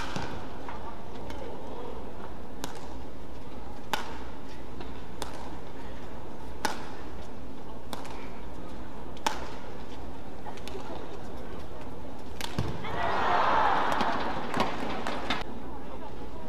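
A badminton rally: sharp racket-on-shuttlecock strikes about every second and a half over steady arena murmur. Near the end, as the point is won, the crowd noise swells briefly.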